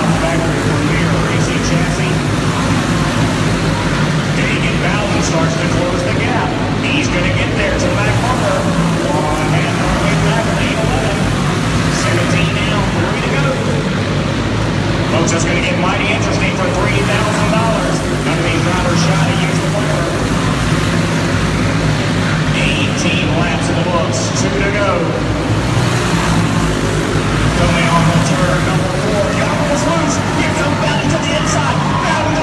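Several racing kart engines running steadily as a field of karts laps an indoor dirt oval, with voices heard throughout.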